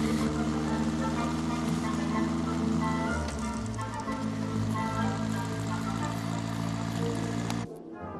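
Orchestral film score with sustained chords, the harmony shifting about three seconds in, over a motorcycle engine running underneath. The sound drops suddenly near the end.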